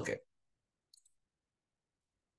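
A single short click from a computer mouse button about a second in, with near silence around it.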